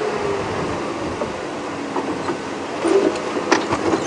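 Open safari vehicle driving slowly over rough, hard ground: the engine runs steadily while the body and fittings rattle, with a few sharp knocks over bumps in the last couple of seconds.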